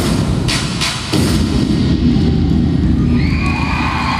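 Bass-heavy routine music ends on a few sharp hits in the first second or so, over a low rumble. An audience then cheers and screams, rising from about three seconds in.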